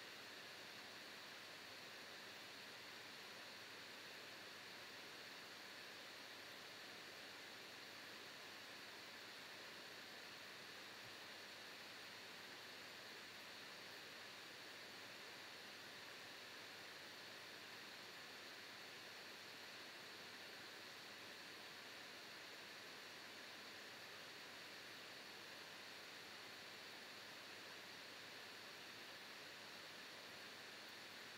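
Faint, steady hiss of a Mac computer's cooling fan running hard under heavy processing load.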